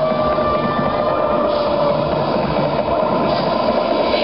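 Loud electronic dance music (tekno/breakbeat) from a festival sound system: held synth tones over a dense, pounding low beat.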